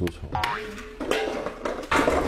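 Comic sound effects added in editing: a short steady tone about a third of a second in, then a longer, lower tone from about a second in, over a low hum.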